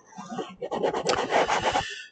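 Stylus scratching and rubbing on a pen tablet's surface as handwritten annotations are erased: an irregular scratching lasting about a second and a half.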